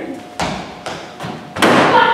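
Several thumps and knocks from actors moving about a stage and at a wooden table. The last and loudest comes about one and a half seconds in.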